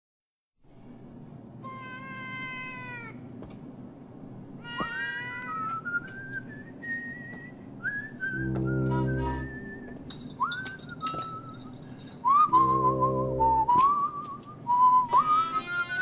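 Intro of a late-1970s pop song: two short cat-like meows, then a tune whistled over a soft accompaniment, with two low held chords and light percussive clicks joining in the second half.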